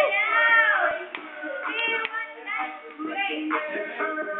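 High-pitched voices talking, with no clear words.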